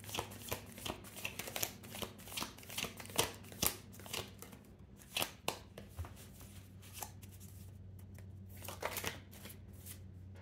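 Tarot deck being shuffled by hand: quick clicks of cards flicking against each other, dense for the first five seconds, thinning out and mostly stopping around seven seconds, with a few more near the end.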